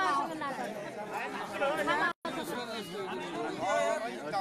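Several men talking over one another in a crowd. The sound cuts out completely for a split second a little past halfway through.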